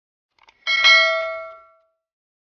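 A sharp metallic strike that rings out in several clear tones and fades away over about a second, just after a faint tick.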